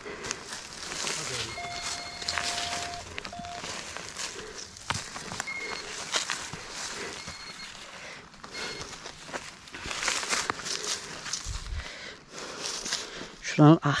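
Gloved hands scraping and scooping dry soil, small stones and leaf litter out of a hole beside a rock, as a run of irregular scratchy rustles and small knocks. A short grunted "ah" comes at the very end.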